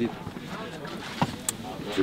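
A lull in outdoor background sound, with a short low knock a little over a second in and a sharp tick just after.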